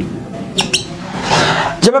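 Whiteboard marker writing on a whiteboard: two short, high squeaks about half a second in, then a longer scratchy stroke.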